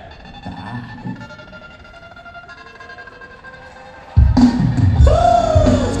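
Live hip-hop band music: soft held notes for about four seconds, then the full band with drums and bass comes in suddenly and loudly, and a voice slides up and down over it.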